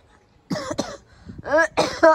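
A person coughing several times in quick succession, loud and close, starting about half a second in.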